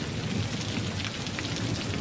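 Heavy rain falling steadily, an even wash of drops with no let-up.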